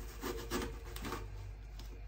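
Kitchen knife slicing through an apple on a wooden cutting board, in a few short cutting strokes.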